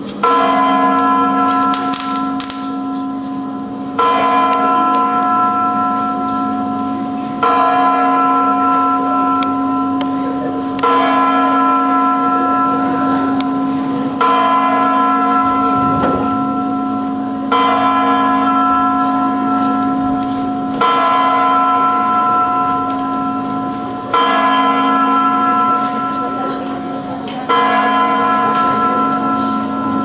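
A large bell tolling slowly: nine strikes, one about every three and a half seconds, each ringing on and fading before the next.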